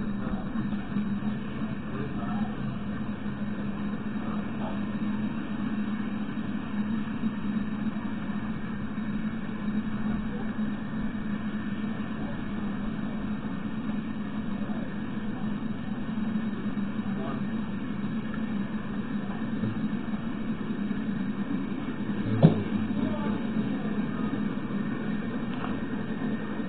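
Norfolk Southern freight cars rolling past on the rails in a steady rumble, heard through a low-quality railcam microphone. There is a single sharp click about 22 seconds in.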